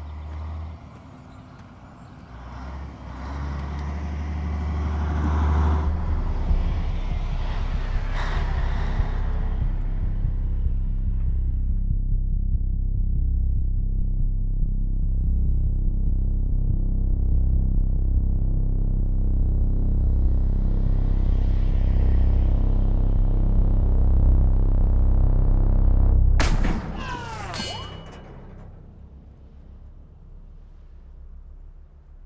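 Semi truck's diesel engine running close by with a steady low rumble, stopping abruptly near the end. It is followed by a couple of sharp cracks with a metallic ring.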